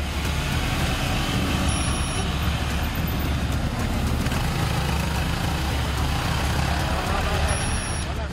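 Several motorcycles riding along together, their engines giving a steady, unbroken noise.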